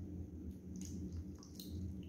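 Thick sauce pouring from a bowl onto raw chicken and vegetables in a roasting pan, giving a few faint, soft wet squelches.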